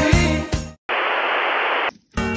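Christmas pop music with jingle bells and a steady beat fades out, then a steady burst of static hiss lasting about a second cuts off suddenly.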